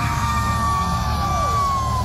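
Wrestler's entrance music over an arena sound system: one long high note held for about two seconds, then sliding down, with shorter falling swoops beneath it, over a heavy low rumble.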